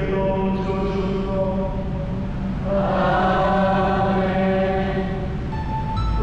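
A Vietnamese Catholic hymn sung in a slow, chant-like melody of long held notes over a steady low sustained note, with a new, higher phrase starting about three seconds in.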